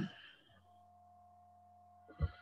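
Near silence: a voice trails off in the first moment, then only a faint steady electronic tone and a low hum carry on.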